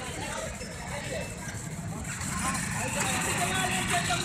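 Several voices talking at once over a steady low rumble of street traffic and engines.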